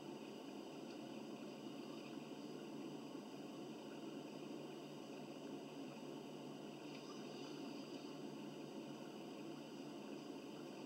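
Faint steady room noise with a low hum and hiss; no distinct footsteps or other events stand out.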